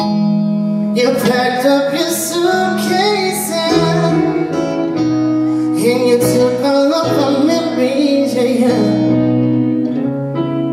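Live band playing a slow song: held keyboard chords that change every second or two, electric guitar, and a wavering sung melody line.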